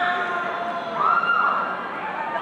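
Drawn-out high-pitched whoops, one rising sharply about halfway through and held for about half a second before falling away.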